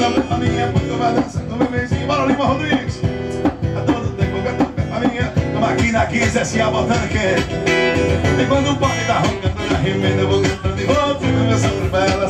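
A man singing into a microphone while strumming an acoustic guitar, in a steady country-style song.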